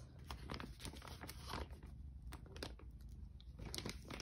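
A crinkly pet-treat bag being handled, giving irregular crackling and crunching clicks.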